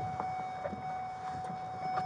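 Intercom call box sounding a steady, single-pitched ringing tone after its call button is pressed, cutting off near the end as the call is answered.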